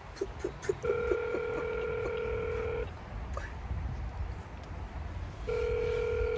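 An electronic beep: a few short pips, then a steady tone about two seconds long that cuts off, and the same tone starting again near the end.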